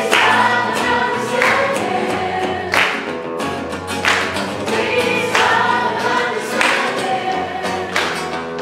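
Live acoustic song: voices singing over two acoustic guitars, with a sharp clap about every second and a quarter keeping the beat.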